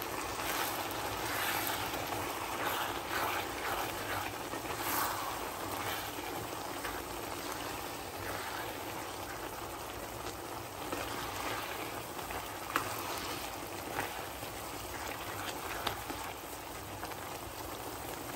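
Chopped spinach in a pan on high heat, sizzling and bubbling steadily in its own released water while a spatula stirs it, with a few light taps of the spatula on the pan.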